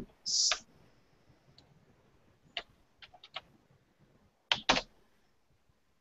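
A few faint, irregular keystrokes on a computer keyboard, about eight scattered clicks, following a brief breathy hiss just after the start.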